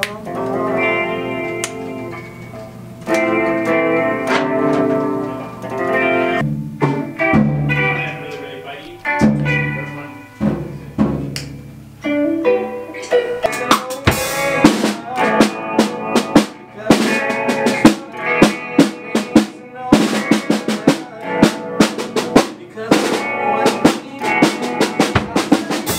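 A band playing in a recording studio: electric guitar and bass chords ring, and a little past halfway the drum kit comes in with quick, busy snare and rimshot hits.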